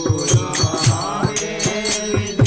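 Group devotional kirtan: voices singing over a steady drone, with hand cymbals (kartals) and a drum keeping a beat of about three strokes a second.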